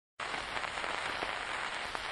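Surface noise of a shellac 78 rpm record in its lead-in groove before the music: a steady hiss and crackle with a few faint clicks. It begins a moment in, after a brief silence.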